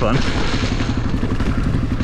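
Honda CRF250F dirt bike's single-cylinder four-stroke engine running at an even pace under way on a dirt trail.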